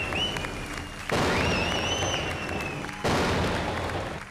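Stage sound effects: sudden crashes of noise about a second in and again near the end, under a high whistling tone that wavers.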